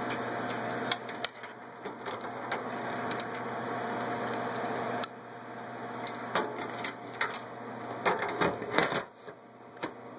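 Desktop PC with many case and radiator fans running with a steady whir and faint hum while being booted, which fails to come up; the level drops suddenly about a second in and again halfway through, then climbs back. Scattered clicks and knocks sound over it, loudest around eight to nine seconds.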